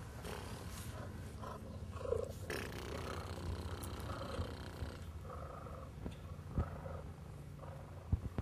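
Cheetah purring, a steady low rumbling purr, while being scratched through a chain-link fence; a single sharp knock late on.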